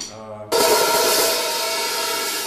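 Half-open Soultone hi-hat struck with a drumstick about half a second in. The two loosely touching cymbals give a long rustling sizzle that slowly fades.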